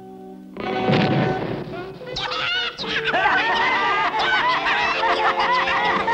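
A cartoon explosion as a trick gift box goes off about half a second in: a short rumbling bang. From about two seconds on, several cartoon Smurf voices laugh together over background music.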